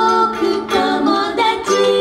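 Two women singing together into microphones over live ukulele and band accompaniment, with a steady held note under the voices.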